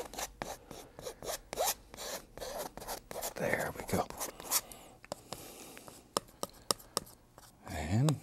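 Paintbrush bristles scrubbing and dabbing oil paint onto a canvas, a run of short scratchy rubbing strokes that come thick and fast for the first few seconds and then thin out to scattered ticks.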